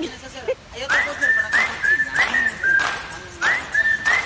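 A run of high whistles, each note a quick upward swoop into a short held tone, repeating about twice a second, with voices and noisy bursts around them.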